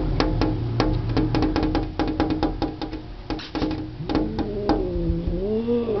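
Agitated cat at a window: a fast run of sharp clicks, several a second, over a low steady tone. Near the end it gives way to a low yowl that rises and falls.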